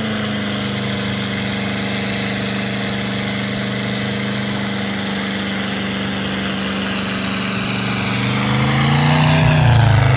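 Chevrolet small-block 350 V8 in an S-10 Blazer held at steady high revs during a burnout, the rear tires spinning. Near the end the revs climb and it gets louder.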